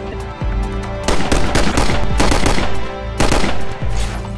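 Two long volleys of rapid automatic gunfire, the first starting about a second in and the second near the end, over background music with steady held notes.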